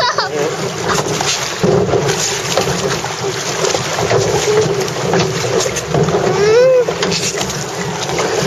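Steady rush and splash of water around a boat moving through the concrete channel of a water ride, with wind buffeting the microphone.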